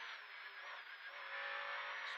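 Škoda 130 LR rally car at speed, heard from inside the cabin: engine and road noise, with a steady engine note coming in about a second in. The rear-mounted four-cylinder engine is pulling in third gear.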